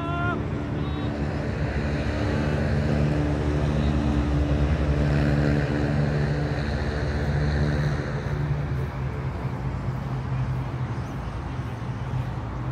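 A steady low engine drone, growing louder in the middle and easing off after about eight seconds, with a brief shouted call right at the start.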